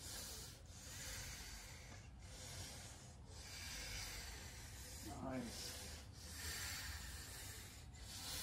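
Heavy breathing under strain during an arm-wrestling bout: hissing breaths in a steady rhythm, about one every second or so, with a short, falling strained grunt about five seconds in.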